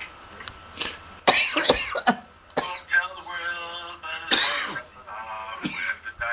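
Voices on a talk-radio recording, with two loud harsh outbursts, one about a second in and one past four seconds in.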